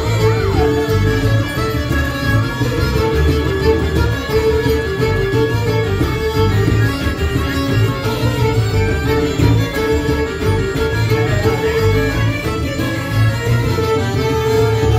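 A folk band playing an instrumental tune live, led by fiddles, with French bagpipes, diatonic accordion, bodhrán and acoustic bass guitar. There is a steady high held note under the melody and a pulsing beat from the drum and bass.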